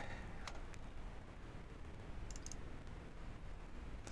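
Two soft computer mouse clicks about half a second in, then a brief cluster of faint high ticks near the middle, over low steady room noise.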